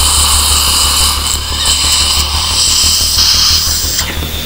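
Dental suction hissing steadily while the extraction socket is rinsed with sterile water.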